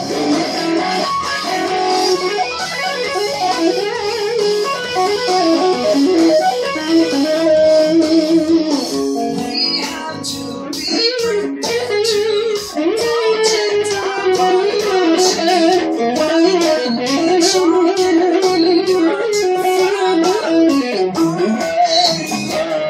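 Solo electric guitar, a Caparison Apple Horn Jazz, playing a busy single-note melodic line; from about ten seconds in it becomes a rapid run of short, sharply attacked notes.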